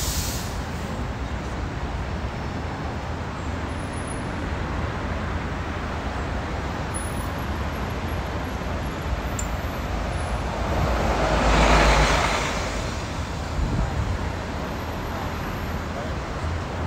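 City street traffic heard from a moving tour bus: a steady low rumble of engines and tyres, with a louder vehicle noise swelling and fading about twelve seconds in.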